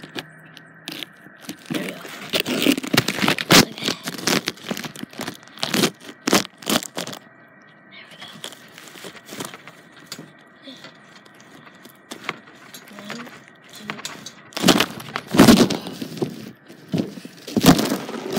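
Irregular scrapes, rustles and knocks, like a phone being handled with things rubbing against its microphone, with a cluster of louder bursts about two-thirds of the way through.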